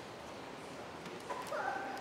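A short, high-pitched yelp-like cry, held for under half a second about one and a half seconds in, just after a faint click, over steady low room noise.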